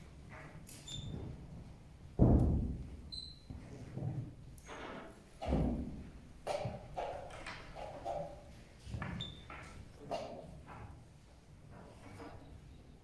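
A series of dull thumps and knocks. The loudest is a deep thump about two seconds in, with another strong one about five and a half seconds in, and a few short high chirps scattered between.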